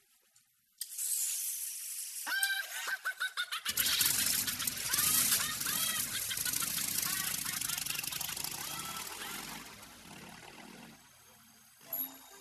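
A motorcycle engine starts up and runs loudly, then fades away as the bike pulls off, with a man's voice over it.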